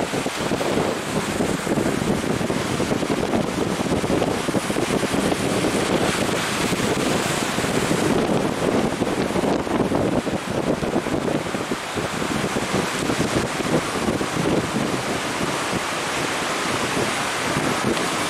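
Surf breaking on the shore under strong wind, with wind buffeting the microphone: a steady, dense rush of noise.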